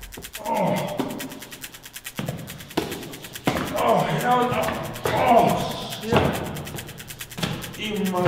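Men groaning and grunting without words as they pick themselves up, over a film music score, with a few sharp thuds.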